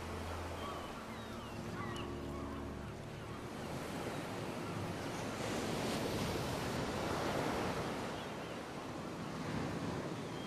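Waves washing in, a rushing sound that builds to its loudest in the middle and then eases. Short bird calls sound in the first few seconds over a low steady drone that stops about three seconds in.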